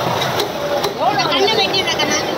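Background voices and general market noise, with a knife chopping into a fish on a wooden cutting block; one sharp knock about half a second in.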